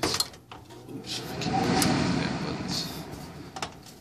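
Handling noise from the phone being moved and set down: a knock right at the start, then a rough rubbing and sliding that swells and fades over the next few seconds, with a few small clicks.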